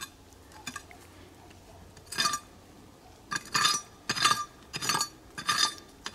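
Hand tool clinking and scraping against quartz rock in a series of short, ringing strokes. The first comes about two seconds in, then several follow at roughly half-second to one-second intervals.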